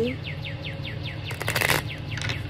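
A bird sings a quick run of about eight short chirps, roughly six a second, each sliding down in pitch. Near the end comes a brief rustle as a deck of cards is handled.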